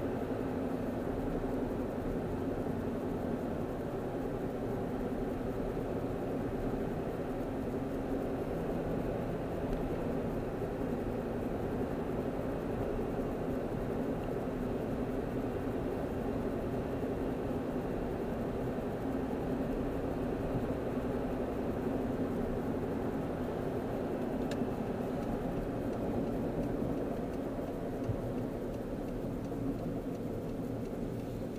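Steady road and engine noise inside a moving car's cabin, an even low rumble without change, with one faint click near the end.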